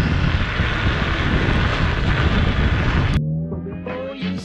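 Wind rushing over the microphone and road rumble from a camera moving fast along an asphalt street. About three seconds in it cuts off suddenly and upbeat background music starts.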